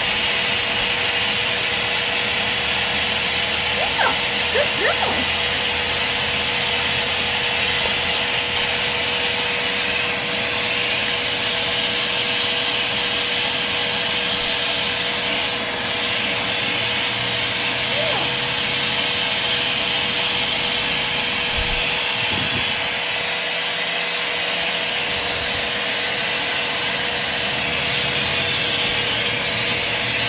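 Pet power dryer (high-velocity blower) running steadily: a continuous rushing hiss with a constant motor hum underneath.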